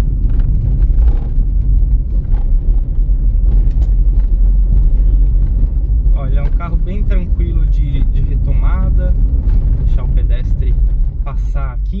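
In-cabin running noise of a Chevrolet Celta's four-cylinder engine and tyres on a city street: a steady low rumble.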